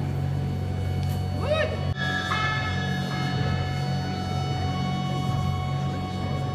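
Live ambient music with held electronic-sounding tones over a steady low drone. About a second and a half in there is a swooping pitch glide, then a sharp click, and a stack of new held notes enters.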